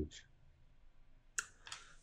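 Near silence broken by a sharp click about one and a half seconds in, then two fainter clicks.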